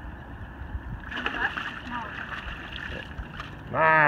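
A smallmouth bass splashing in the water as it is landed in a net, over steady wind and lapping-water noise. A voice comes in loudly just before the end.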